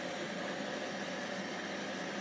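Electrolux Time Manager front-loading washer-dryer running, a steady even whooshing noise with a low hum.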